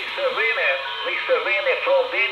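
A voice coming through a Quansheng handheld transceiver's small speaker while it listens on 2 m FM, thin and narrow-band, starting a moment in.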